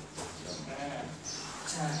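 A man speaking Thai, explaining a ground technique, over a steady low hum.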